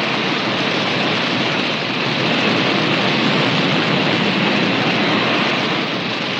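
Forest fire burning on a 1940s film soundtrack: a steady, loud rushing noise that swells as it begins.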